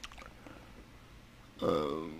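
Faint room tone, then about a second and a half in, a man's voice holding a drawn-out hesitant "uhh" that slowly falls in pitch.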